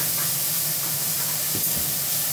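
Food frying in a pan on the stove: a steady sizzling hiss.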